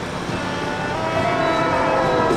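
Music with a held, sustained note that grows steadily louder.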